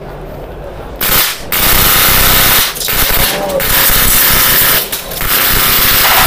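Modified, hopped-up airsoft rifle with a Nexxus mechanical HPA engine firing full auto, rated at about 40 BBs per second. It is loud and runs in long strings starting about a second in, with a few brief pauses between them.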